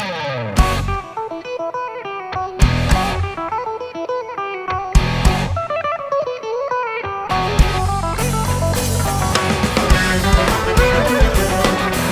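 A live band opening a song with an instrumental introduction: guitar over separate accented hits at first, then the full band with congas and other percussion coming in about seven seconds in and playing on at a steady beat.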